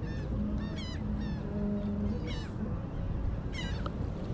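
Birds calling: a quick series of short, falling squawks, some in runs of three or four, over a steady low background noise.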